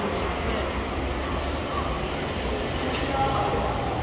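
Steady shopping-centre background noise with a low rumble and faint voices.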